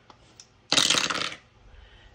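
Two dice rolled into a small wooden tray: a short clattering rattle starting just under a second in and lasting about half a second.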